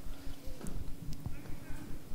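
Soft, irregular knocks and scuffs of small wooden figures being moved across and set down in the sand of a sand-filled desert bag, with a faint steady hum underneath.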